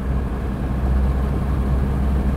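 VAZ 2107 (Lada) four-cylinder engine running steadily with road noise while driving, heard from inside the cabin as a low, even hum.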